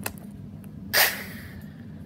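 A short, sharp breathy hiss from a person's mouth about a second in, trailing off, over a steady low hum.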